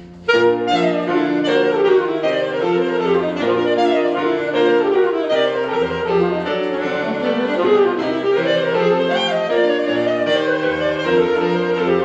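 Alto saxophone and piano playing a fast, busy passage of running notes and sweeping runs, coming in loudly together just after the start.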